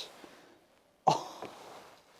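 A man's exclamation trails off, and about a second later he lets out one short, breathy vocal sound that fades within half a second.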